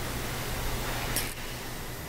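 Steady background hiss over a low hum, with one brief high-pitched hiss about a second in.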